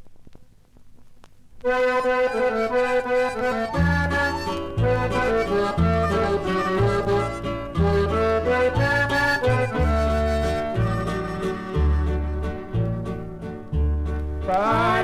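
A vinyl LP playing: about a second and a half of faint surface crackle in the silent groove between tracks, then the instrumental introduction of a Mexican corrido starts, a melody of held notes over a steady bass beat.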